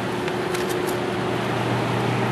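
Evaporative (swamp) cooler running close up: a steady rush of fan noise with a low, even motor hum.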